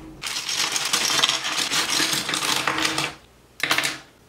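Cardboard model-kit box being handled and opened, with small plastic parts rattling and clattering inside for about three seconds. A second short clatter comes near the end.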